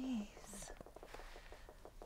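A woman's short breathy, whispered vocal sound right at the start, falling in pitch, with a faint breath shortly after, over a faint rapid ticking.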